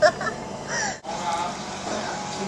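Brief snatches of voices, then an abrupt cut about a second in to the steady background murmur of a restaurant dining room with faint chatter.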